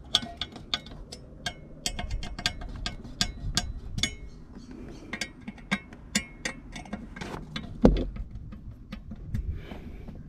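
Many small sharp clicks and taps of a Bulletpoint dash mount's hard plastic and metal parts being handled and screwed down into a truck dashboard, coming thick and fast at first and more spaced out later. One louder knock comes about eight seconds in.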